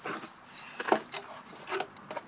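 A few light knocks and clicks of handling, the loudest about a second in.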